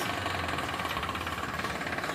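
An engine idling steadily, with a rapid, even clatter.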